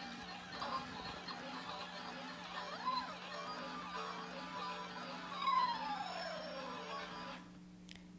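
Twirlywoos Peekaboo spinning soft toy playing its electronic tune and funny sound effects as it spins. Near the end comes a long falling glide, and the toy's sounds stop shortly before the end.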